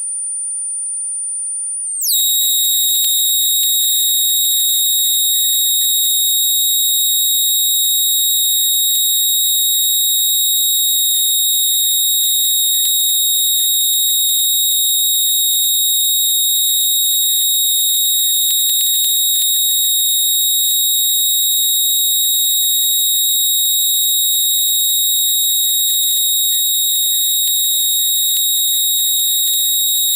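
Live experimental electronic music: a few steady, piercing high sine tones held together over a faint hiss. A single high tone slides down about two seconds in, and the layered tones come in louder.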